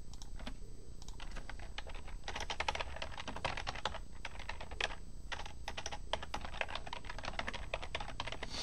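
Computer keyboard keys clicking as a line of code is typed, in quick runs of keystrokes with short pauses between them.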